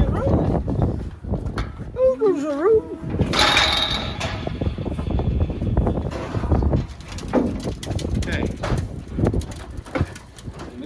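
Heifers being loaded into a livestock lorry: repeated knocking and clattering of hooves and metal ramp, gates and panels, with people calling out to the cattle. A call that bends up and down comes about two seconds in, then a short burst of harsh noise lasting about a second.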